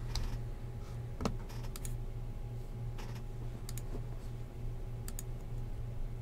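Computer mouse clicks: a few sharp single and double clicks spread out about a second apart, over a low steady hum.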